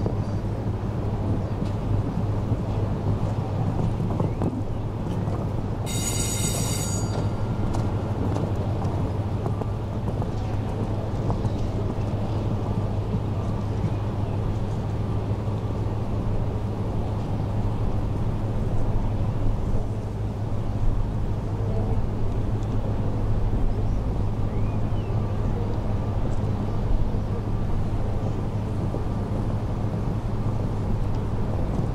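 Steady outdoor background noise with a constant low hum. About six seconds in, a high ringing tone sounds for about a second.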